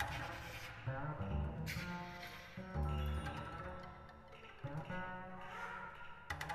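Contemporary chamber ensemble of double bass, flute, clarinet, viola, piano and percussion playing. Sustained low string notes carry the texture, cut by sharp accented attacks right at the start, just before two seconds in and again near the end.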